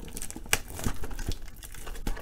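Cellophane shrink wrap on a trading-card box crinkling and crackling as hands work at it to open the box, with irregular sharp crackles, the loudest about half a second in.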